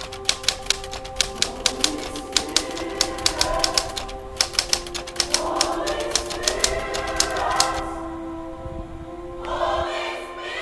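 Typewriter keys clacking in quick, irregular strokes as a title is typed out; they stop about three-quarters of the way through. Underneath, music with held chords and choir voices that come in a few seconds in and swell toward the end.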